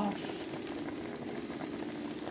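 Drained rice simmering over low heat in an enamelled pot on the stove: a faint fine crackle over a steady low hum.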